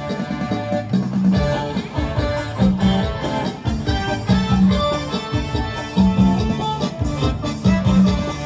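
Khmer cha-cha-cha dance music with a steady beat, an instrumental stretch without singing.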